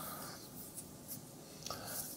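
Quiet room tone with a faint rustle.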